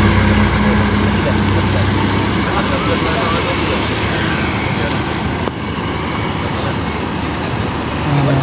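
A bus engine running as the bus passes close by, its low hum fading over the first few seconds as it pulls away. Steady road noise continues under it.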